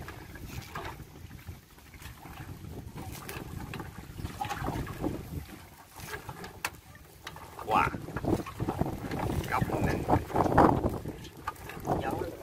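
A gill net being hauled by hand over the side of a boat on a windy river, with wind buffeting the microphone throughout. A man exclaims about eight seconds in.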